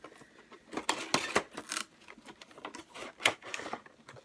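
Cardboard box and packaging being handled and opened: a run of scrapes, rustles and sharp clicks, loudest about a second in and again near three seconds.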